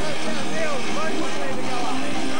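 Heavy metal band playing live, with distorted electric guitars and drums and a lead line that bends up and down in pitch over steady held notes. The recording is loud and distorted.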